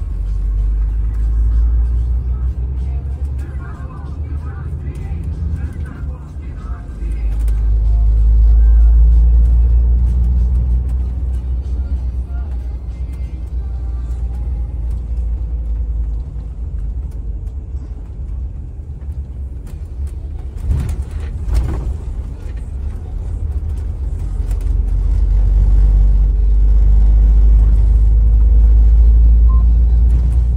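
Bus engine and road rumble heard from inside the passenger cabin, a deep drone that swells twice as the bus picks up speed. A couple of sharp knocks, about a second apart, sound about two-thirds of the way through.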